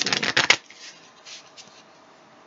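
A deck of tarot cards being shuffled by hand: a rapid flutter of card edges for about half a second that ends in a sharp snap, followed by a couple of faint card rustles.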